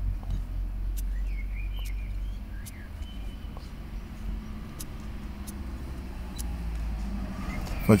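Steady low rumble of a motor vehicle's engine in the background, with a few faint, sharp clicks of pruning shears snipping leaves off orange scions.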